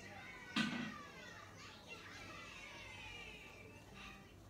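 Children's voices in the background, playing and calling out over one another, with a single sharp knock about half a second in.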